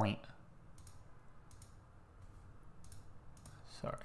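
A few faint, scattered computer mouse clicks over quiet room tone.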